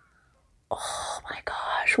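A woman's breathy whispering: a brief near-silence, then under a second in a few short, breathy whispered sounds that build toward an exclamation.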